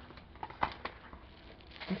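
A few faint, short crinkles and clicks as a bubble-wrapped package is handled.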